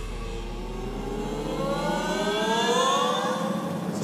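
A synthesizer sweep rising steadily in pitch over a low bass drone, building in loudness for about three seconds and fading out near the end: a build-up passage in the song's live arrangement.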